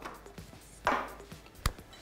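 Kitchenware knocking on a counter as it is handled: a dull knock just before a second in, then a sharp click about half a second later. Faint background music underneath.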